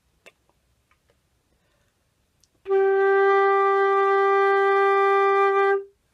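Concert flute playing one long, steady sustained note, starting about two and a half seconds in after near silence and held for about three seconds before stopping cleanly. The note is held on a moderate breath, with air still left at the end.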